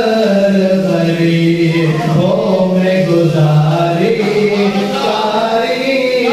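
A man singing a naat, an Urdu devotional poem in praise of the Prophet. He sings unaccompanied in a long, chant-like line of held notes that step up and down in pitch.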